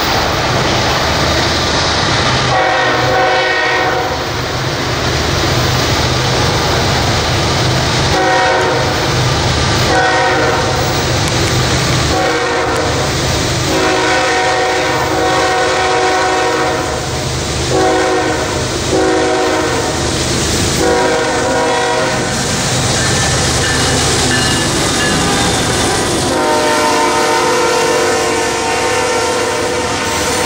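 CSX diesel freight locomotive sounding its multi-note air horn in a long series of blasts as it approaches, over the steady low rumble of the train. Near the end a long blast sounds as the locomotive passes close, with its wheels clacking on the rails.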